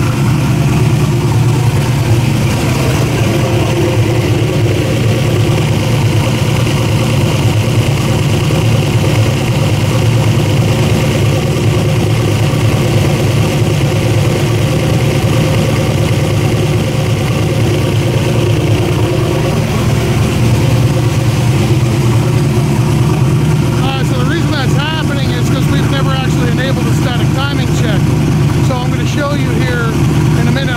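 Turbocharged engine idling steadily and loudly, running under Holley EFI control with no revving.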